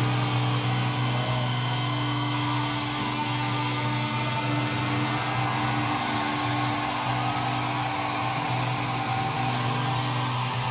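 Distorted electric guitars holding a sustained chord that rings on steadily with no beat, as a live rock song is drawn out.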